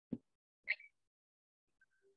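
Two brief soft pops about half a second apart, with dead silence after them.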